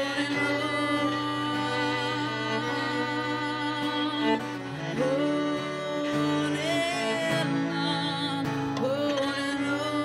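Acoustic duo playing: a woman sings over her own acoustic guitar while a cello plays long bowed notes beneath. Her sung phrases begin with rising slides about halfway through and again near the end.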